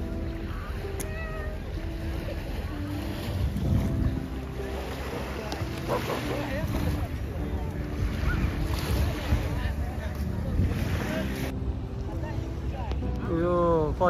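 Wind buffeting the microphone with low rumble, over beach ambience of small waves lapping at the shore and distant voices.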